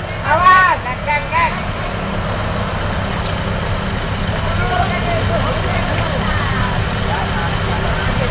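Minibus diesel engine running steadily at low revs, a low even hum. Men's shouts are heard in the first second and a half.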